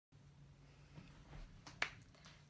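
Handling noise from setting up the recording camera: faint soft rustles over a low room hum, then a single sharp click near the end.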